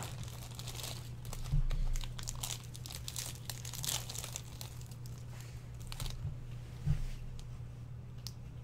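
Packaging of a 1984 Topps hockey card pack crinkling and tearing as it is handled and opened by hand, with two knocks, about a second and a half in and near the end, over a steady low hum.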